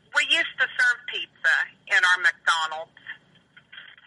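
Speech only: a person talking over a telephone line, with a short pause about three seconds in.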